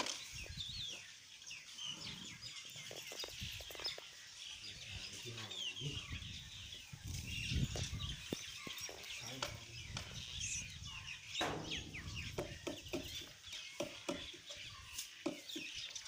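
Chickens clucking and many small birds chirping, with a few scattered soft knocks.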